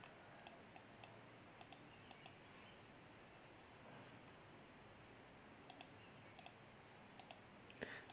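Faint clicks, mostly in quick pairs, in two short runs separated by a few seconds of near silence.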